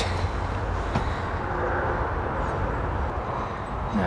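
Steady outdoor background noise: a low rumble with an even hiss above it, with no distinct knocks or calls.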